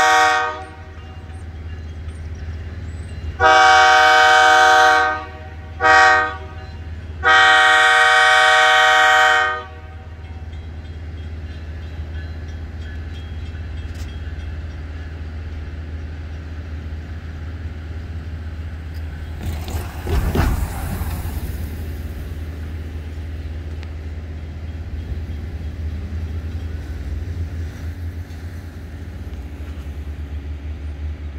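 Diesel locomotive air horn sounding the grade-crossing signal: the tail of one long blast, then a long, a short and a long blast, each a chord of several tones, ending about ten seconds in. After it a distant locomotive engine rumbles low and steady, with a brief rushing noise about twenty seconds in.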